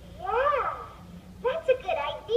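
A cartoon Siamese kitten's voice: one meow-like call whose pitch rises and falls about half a second in, then a few quick spoken syllables near the end.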